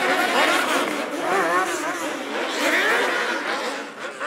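Motorcycle engines revving up and down repeatedly in the street, over the noise of a large crowd.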